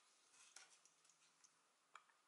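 Near silence, with a few faint ticks and rustles from a crochet hook and yarn being handled, one sharper tick near the end.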